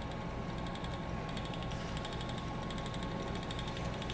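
Ashford Elizabeth 2 spinning wheel turning steadily as yarn is spun: a continuous mechanical whir with rapid, even light ticking.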